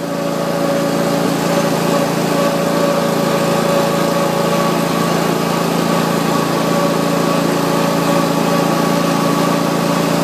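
Exmark Lazer Z zero-turn mower's engine running at a steady speed while the mower travels, an even, unchanging hum.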